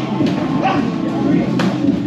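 Busy boxing gym: many voices talking at once over background music, with a couple of sharp smacks from strikes.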